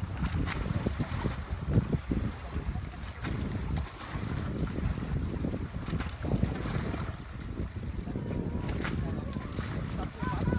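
Wind buffeting the microphone in a gusty low rumble over the sea, with faint voices in the background.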